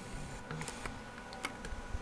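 Faint handling noise: a few light, scattered clicks over a low room hum.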